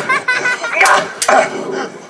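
Two sharp knocks about a third of a second apart, from blows with a broom in a staged fight, among shouts and grunts.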